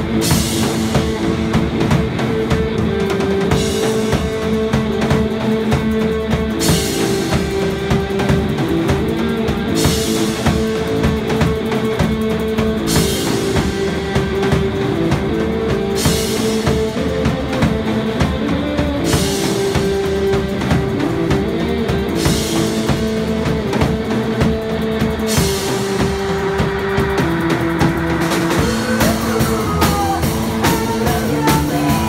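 Live rock band playing an instrumental passage: drum kit with a cymbal crash about every three seconds, under sustained bass and guitar notes that change every few seconds.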